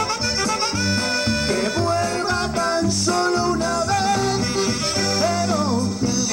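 Live dance band playing Latin dance music on keyboard, electric guitar or bass, and drum kit: a continuous instrumental stretch with a wavering melodic lead over a repeating bass line and a steady beat.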